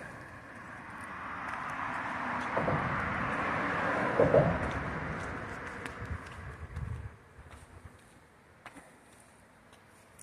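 A road vehicle passing by, its tyre noise swelling to a peak about four seconds in and fading away by about seven seconds.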